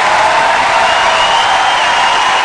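A large theatre audience applauding loudly and steadily, with some cheering, at the end of a stand-up set.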